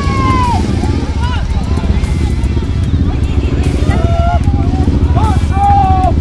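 A row of Royal Enfield motorcycles idling together at low revs, a dense, fast-pulsing low rumble, with people's voices and shouts over the top.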